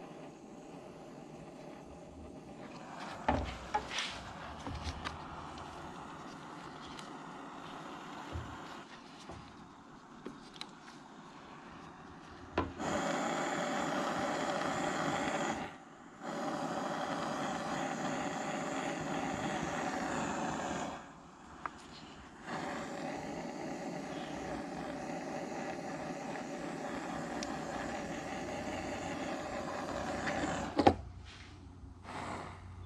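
Small butane torch flame hissing steadily in three bursts of several seconds each, cut off sharply in between, as heat-shrink tubing is shrunk over soldered headlight-wire joints. Before the torch starts there are light knocks and rubbing from the wires being handled.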